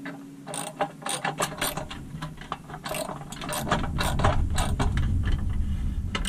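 Small hand socket ratchet clicking in short, irregular runs as it turns a nut on a pressed-steel toy truck chassis. A low rumble sits under the clicks in the last couple of seconds.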